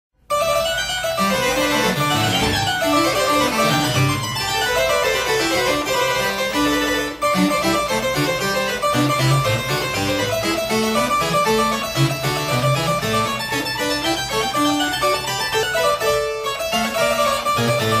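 Double-manual French-style harpsichord (a 1975 Hubbard–Di Veroli copy after Taskin) played with full registration, two 8' choirs and a 4', in a busy, fast-moving French Baroque keyboard piece.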